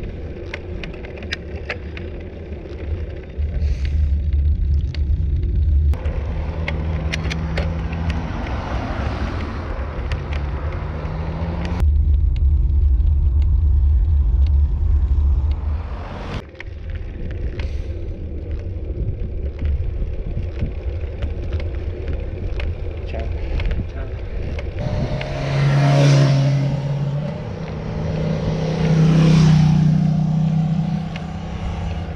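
Wind buffeting the microphone of a bicycle-mounted camera on a moving road bike: a low rumble that surges in gusts, with scattered small clicks. Near the end a motor vehicle's engine passes close by, rising and falling twice.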